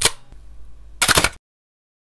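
Edited-in end-card sound effects: a sharp hit that dies away, then a brief noisy burst with several quick peaks about a second in, which cuts off suddenly.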